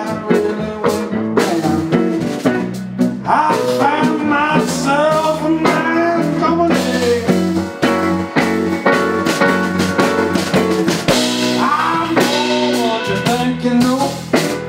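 Live blues-rock band playing: electric guitar, electric bass and drum kit, with bending lead notes over a steady beat.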